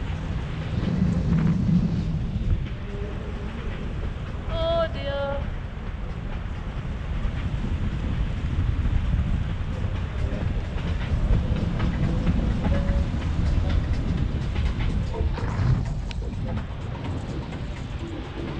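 Wind buffeting the microphone of a camera on a paraglider in flight: a steady, dense low rumble. About five seconds in, a short high-pitched sound rises briefly over it.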